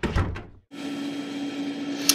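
A brief thud as the intro's sound ends, then, after a moment of silence, steady room tone: a constant low hum with faint hiss.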